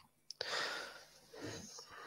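A faint click, then a short breathy exhale close to a microphone.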